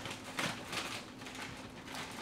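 Plastic bag of frozen broccoli crinkling as it is cut with scissors and pulled open: a string of short rustles.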